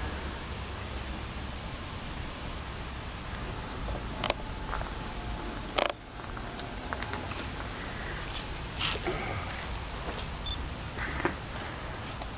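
Steady outdoor background hiss with camera handling noise: a few sharp clicks, the two loudest about four and six seconds in.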